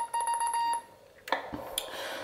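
Morse sidetone from a homemade CW transceiver's internal speaker while it transmits: a steady beep of about 1 kHz, broken briefly just after the start, that stops a little under a second in. A couple of short clicks follow.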